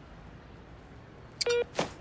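Pedestrian crossing signal giving a single short beep about one and a half seconds in, as the green man lights, followed by a brief soft swish.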